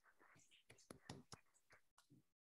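Near silence, with a few faint, brief clicks and a short faint murmur of voice about a second in.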